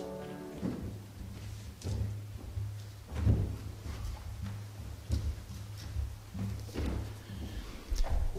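The last sung chord of a small choir cuts off about half a second in. Then come scattered dull thumps and knocks, five or six of them, as the singers walk off a raised platform, over a low rumble.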